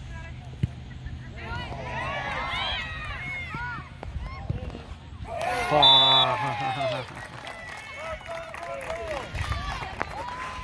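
Several voices shouting and calling at a soccer game, many overlapping at once, with the loudest shout a little after five seconds in, over a steady low hum.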